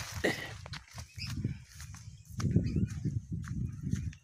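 Irregular low rumbling with a few faint clicks, the handling and wind noise of a hand-held phone microphone carried by someone walking.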